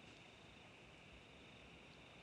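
Near silence: faint, steady room tone with a thin high hiss.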